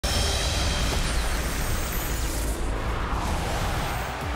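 A highlight-reel soundtrack cuts in suddenly out of silence: music under a loud, steady wash of noise with a heavy low rumble.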